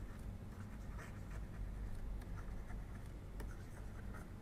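Faint scratching and light tapping of a stylus writing words on a tablet, over a low steady hum.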